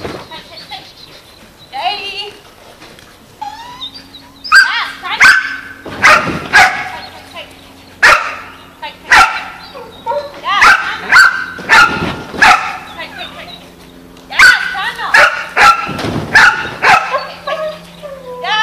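A dog barking loudly in repeated clusters of short, sharp barks while it runs an agility sequence.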